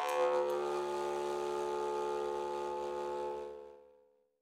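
Rakhimgulov-made kubyz (Bashkir jaw harp) holding its final note: a steady drone with one held overtone sounding clearly above it, with no further plucks, fading out near the end.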